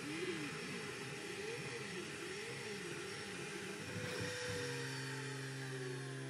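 FLSUN delta 3D printer at high speed, its stepper motors whining in a pitch that keeps rising and falling as the print head moves. A little over four seconds in the motion stops, leaving a steady hum and a tone that glides down.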